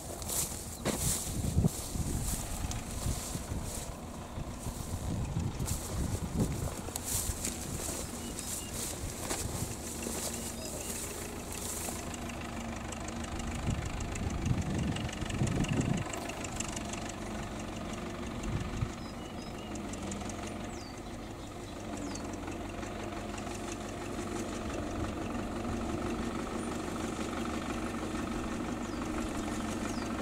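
A farm tractor's engine running steadily as it creeps forward with a hay bale lifted high on its front loader. During the first dozen seconds, brushing steps through tall grass about twice a second are heard over it.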